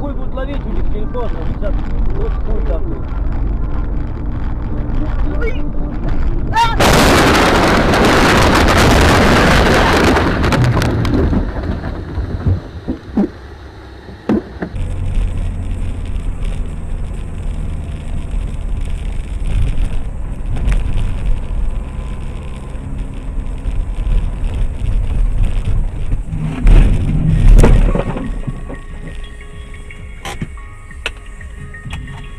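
Vehicle road and engine rumble broken by a loud noisy burst about seven seconds in that lasts about four seconds, followed by a few sharp knocks, and another loud burst near the end.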